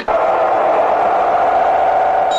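A cartoon tuba blown in one long, steady held note over a hiss.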